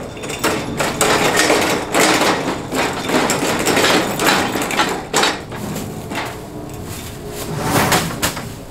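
Scraping, rustling and knocking as a large potted tree is shifted in the back of a van. The noise runs in a dense series of short bursts for about five seconds, then one more burst comes near the end.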